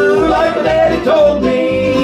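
A live country-bluegrass band playing: acoustic guitar, mandolin, dobro and bass guitar, with a regular bass pulse under held notes.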